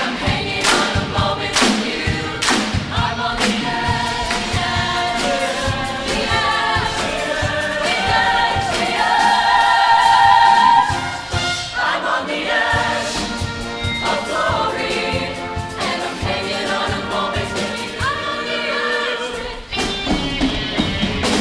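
Mixed show choir singing in harmony over a beat, building to a loud held chord about nine seconds in that breaks off just before eleven seconds, then singing on.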